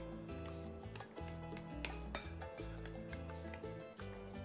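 Background music with a steady bass line, over a metal spoon stirring and scraping a sticky honey mixture around a glass bowl.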